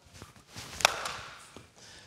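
A single sharp crack of a wooden baseball bat meeting a softly lobbed baseball, about a second in, with a brief ringing tail.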